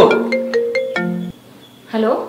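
Mobile phone ringtone playing a melody of short pitched notes, about four a second, that cuts off about a second and a quarter in as the call is answered.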